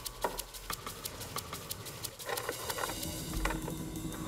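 A quick, uneven patter of light clicks and ticks.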